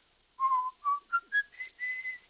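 A man whistling a short tune: about five clear notes stepping up in pitch, the last one held.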